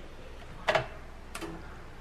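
Two sharp taps about two-thirds of a second apart: a young crow's beak pecking at a mealworm on the newspaper-lined floor of its wire cage.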